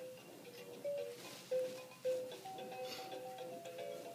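Electronic toy music from a baby's play gym: a simple tune of short, clear notes, three of them louder in the first half.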